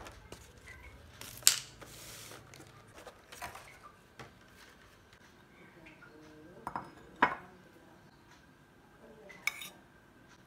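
Dishes being handled on a stone countertop: a clear plastic takeout container and a ceramic pan knocked and set down, about five sharp separate clacks, the loudest about a second and a half in and again just past seven seconds.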